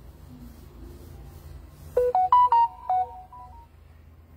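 A short electronic alert jingle of about six quick pitched notes, starting about two seconds in and over in under two seconds, over a low steady hum.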